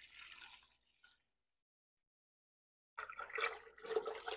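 Water pouring from a plastic bottle into a plastic pitcher. It is a faint pour that fades out about half a second in, then complete silence for about two seconds, then the splashing pour starts again about three seconds in.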